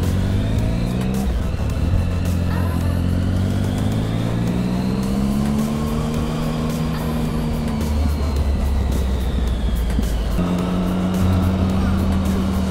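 2008 Triumph Speed Triple's 1050 cc inline-three engine running under way, its pitch climbing gradually for several seconds as the bike gathers speed, then holding steady near the end.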